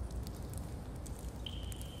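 Quiet low background hum with faint, soft scattered ticks. A thin, steady high tone comes in about one and a half seconds in and holds.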